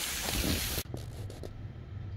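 Thin slices of marinated pork sizzling on tin foil on a grill, a steady hiss that stops abruptly under a second in, leaving quiet room tone with a few faint clicks.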